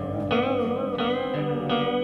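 Guitar played through an Old Blood Noise Endeavors Reflector V3 chorus pedal with the chorus depth at maximum and the rate turned up fast. The sustained notes have a fast, deep wobble in pitch.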